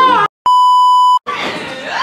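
A single electronic bleep, one steady high tone held for about three quarters of a second, edited in with dead silence cut in just before and after it, the kind used as a censor bleep over a word.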